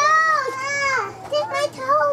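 A young girl's high-pitched voice calling out: two drawn-out, arching calls in the first second, then shorter ones.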